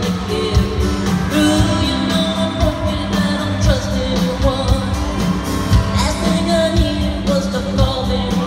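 Live pop-country band music with a woman singing the lead into a microphone, over acoustic guitar and a steady drum beat, heard from the audience through the arena's sound system.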